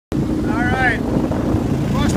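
Boat motor running steadily as a flat-bottom boat travels upriver. A short high call rises and falls about half a second in.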